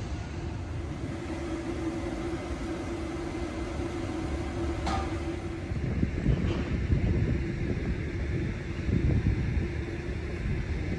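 Vehicle running with a steady hum over a low rumble; the hum fades about halfway through, and louder low rumbles come twice in the second half.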